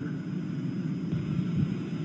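Steady low rumble of aircraft noise in the soundtrack of aerial strike footage, in a gap between radio exchanges.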